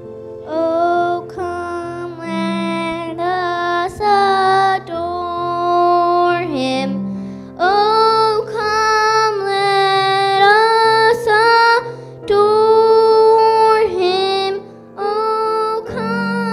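A single high voice sings a slow song in held phrases with short breaks, over steady instrumental accompaniment.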